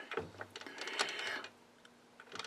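Light metallic clicking and rattling as the lathe's tool post and carriage are repositioned, dying away after about a second and a half.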